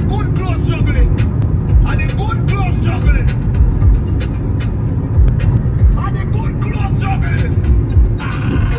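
Music with a voice and heavy bass playing on a car stereo, heard inside the cabin of a moving car over road noise.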